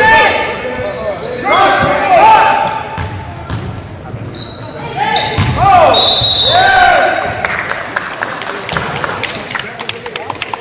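Basketball game in a gym: sneakers squeaking on the hardwood floor in two spells, around a second and a half in and again from about five to seven seconds, over a dribbled basketball bouncing. Voices echo in the large hall throughout.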